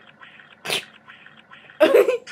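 Two short, sharp vocal bursts about a second apart, the second one louder.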